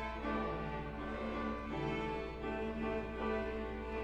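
School beginning string orchestra of violins, cellos and double basses playing, bowed notes held and changing about once a second.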